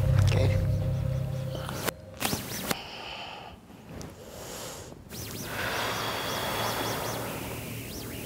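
Interference on a wireless clip-on microphone: a low buzz for the first two seconds, then crackles and clicks, a quieter stretch, and a hiss from about five seconds in. The sound is typical of a frequency clash on the clip-on mic's radio link.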